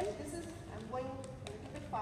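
A woman's voice speaking, with a few light taps and clicks.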